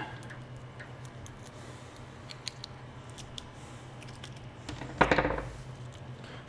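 Faint, scattered light clicks and ticks of small metal parts and tools being handled on a workbench, over a low steady hum.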